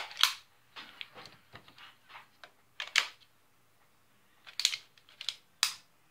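Plastic pieces of a toy lightsaber hilt clicking and knocking as they are handled and fitted together: a scatter of short sharp clicks, the loudest about three seconds in and in the last second and a half.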